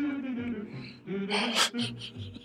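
A man's laughter trailing off, followed by two short breathy bursts of laughing breath about one and a half seconds in.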